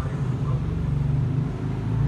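A steady low rumble of a running engine, with no clear rises or falls.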